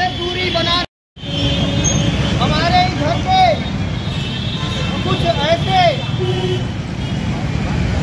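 Steady rumble of road traffic, with people's voices talking in the background. The sound drops out completely for a moment about a second in.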